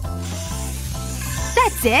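Background music with a steady bass line. Under it, for the first second and a half, a faint hiss of a felt-tip marker drawn around a foot on paper.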